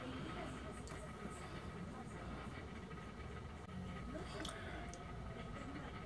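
Quiet room tone: a steady low hum with faint, indistinct voices in the background and a few soft clicks.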